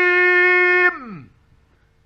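A man's voice in Quran recitation holding one long, steady note, which slides down in pitch and breaks off about a second in; after that only a faint steady hum remains.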